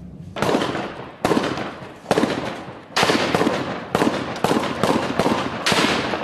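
Gunshots cracking across a city, about nine sharp reports, each echoing off for a moment, coming faster toward the end.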